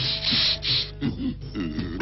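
Cartoon sound effects: two short rasping, sawing-like noise strokes, then low grunting vocal sounds.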